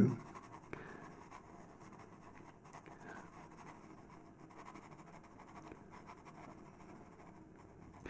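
Faint scratching of a Faber-Castell PITT pastel pencil worked in short strokes across sanded PastelMat paper.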